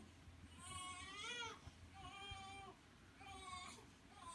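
A baby fussing in three short, high, wavering cries, the first rising and falling in pitch.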